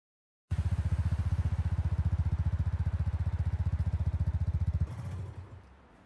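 Motorcycle engine running steadily: a deep, rapid, even pulsing that starts half a second in, cuts off about five seconds in and fades away.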